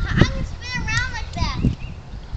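Young children's high-pitched voices, wordless calls and vocalizing while they play, with a couple of low thumps on the microphone.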